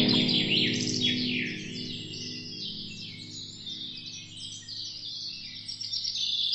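Small birds chirping in quick, overlapping calls, over a held low musical note that fades away.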